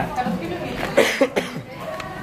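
A person coughing about a second in, over background voices.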